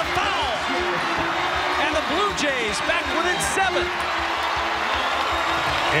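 Basketball arena game sound: a steady crowd noise, sneakers squeaking on the hardwood court in many short sweeping chirps, and a basketball bouncing.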